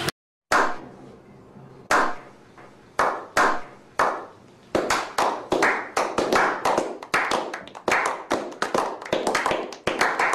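Slow clap: single hand claps about a second apart, each with a short echo, that speed up about halfway through into quick clapping by a small group.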